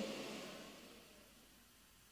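Near silence in a pause between spoken sentences: a faint hiss fades away over about the first second, then only quiet room tone.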